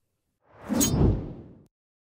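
A whoosh transition sound effect that swells in about half a second in, peaks and fades out over about a second.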